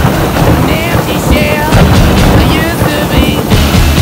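Tropical thunderstorm: a loud, steady rush of rain and wind with low rumbling, and short snatches of music mixed in.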